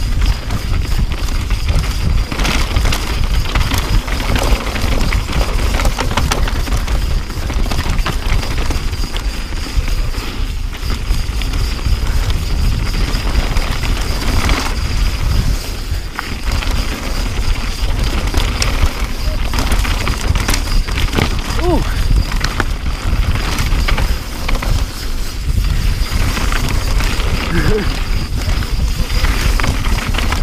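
Mountain bike descending rocky dirt singletrack: heavy wind rumble on the camera microphone, with tyres crunching over dirt and stones and the bike rattling over bumps. A thin steady high whine runs underneath.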